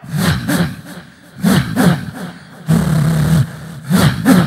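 A mimicry artist's voice, cupped against the microphone, imitating Hollywood film sound effects: a run of rough, growling bursts, with one longer held growl late on.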